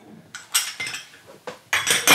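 Glass and metal teaware clinking as it is handled and set down on a table: a few sharp clinks with a short ring, about half a second in and again near the end.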